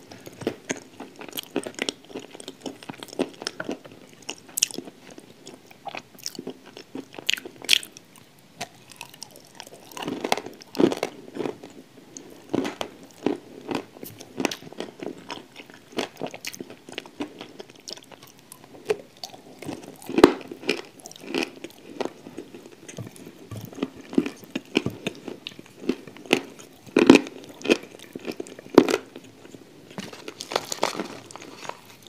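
Close-miked chewing of a mouthful of clay: a steady run of irregular crunches and clicks, some louder crunches standing out.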